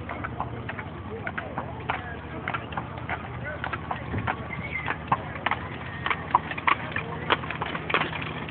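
A mule's hooves clopping at a walk as it pulls a cart, an uneven string of sharp clops about two a second over a steady low hum.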